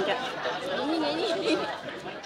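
Only voices: people talking, with a low murmur of chatter behind.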